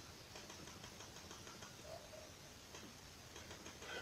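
Near silence: room tone with a few faint clicks of calculator keys being pressed.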